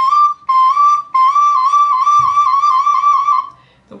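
Soprano recorder playing a short phrase: two short notes, then a long held note with an even vibrato that stops about three and a half seconds in. It is a demonstration of the appoggiaturas and vibrato used as ornaments.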